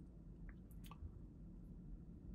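Near silence: low room tone with a few faint, brief clicks.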